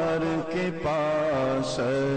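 A man singing an Urdu naat (devotional praise poem) into a microphone, drawing out long, gently wavering notes that step from pitch to pitch, with short breaks for breath.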